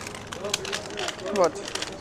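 A woman speaking briefly, with a crinkling rustle of plastic ice-cream wrappers as a hand picks through a shop freezer.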